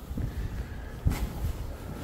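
Faint footsteps and handling noise from a phone carried while walking, with one sharper click about a second in.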